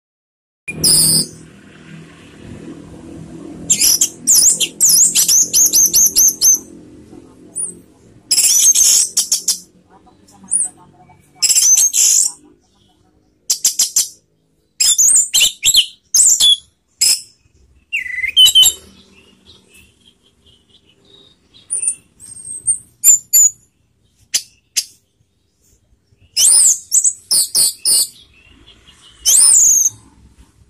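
Orange-headed thrush (anis merah) singing, a series of high-pitched phrases of rapid notes. Each phrase lasts a second or two, with short pauses between them.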